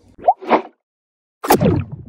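Cartoon-style animation sound effects: a quick rising pop about a quarter second in and a short swish, then after a gap a sharp hit with a falling whoosh near the end.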